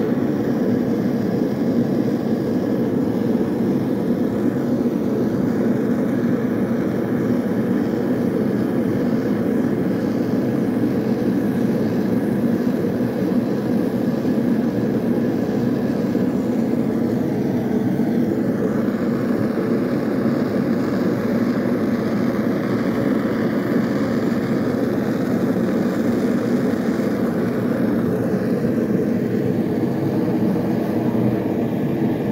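Gas burners running with a steady, unbroken rushing noise: a handheld gas torch flame heating a steel hook-knife blade, with a lit gas forge close by.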